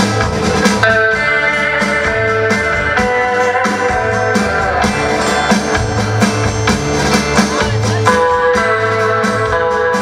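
Live rockabilly band playing an instrumental: a Stratocaster electric guitar carries a sustained melody over strummed rhythm guitar, upright double bass and a steady drum-kit beat.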